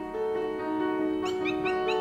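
Background music with sustained tones. From a little past halfway, a rapid series of short, sharp, yapping calls from black-winged stilts, about six a second.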